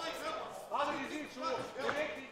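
Men's voices calling out from ringside and the crowd in a large hall, in short scattered shouts and chatter.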